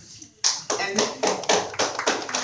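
Audience applause, many hands clapping irregularly, starting suddenly about half a second in after a brief lull.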